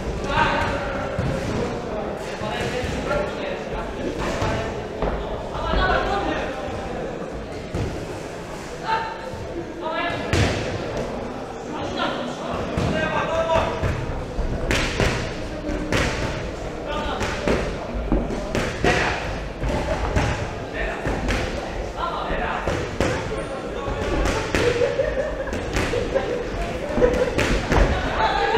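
Irregular thuds of boxing gloves landing and feet striking the ring canvas during an exchange of punches, mixed with shouting voices from ringside in a large hall.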